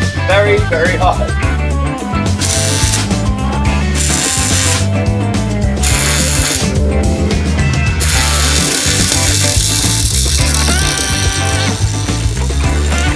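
Rock music with a heavy bass line, over which an electric welder's arc crackles in several short bursts and then one longer run of welding from about eight seconds in.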